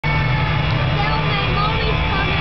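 Two Ford Mustangs idling side by side at a drag-strip starting line before the launch: a steady low engine rumble, with a voice faintly over it.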